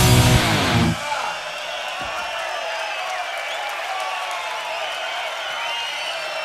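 A live rock band's final chord on electric guitars, bass and drums rings out and stops about a second in. The audience cheering and shouting follows.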